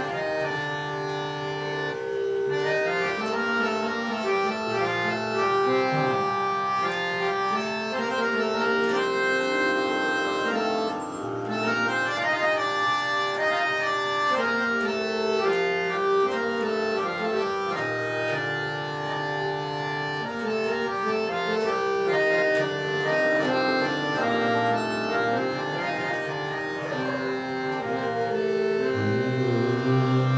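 Harmonium playing a melodic introduction in raga Mishra Kafi, sustained reed notes moving step by step over held lower notes.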